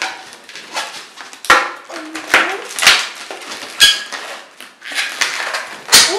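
Long latex modelling balloons being twisted and locked together by hand: rubber rubbing and squeaking in irregular strokes, with several sharp, loud squeaks.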